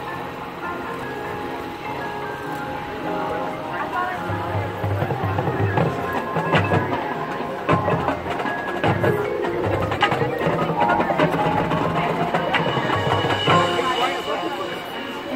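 Marching band playing its field show: sustained brass chords with drums and mallet percussion, growing louder with strong hits from about four seconds in.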